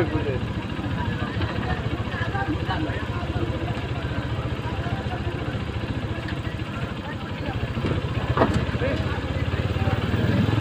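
Motorcycle engine idling steadily close by, with people talking in the background and a single sharp knock about eight and a half seconds in.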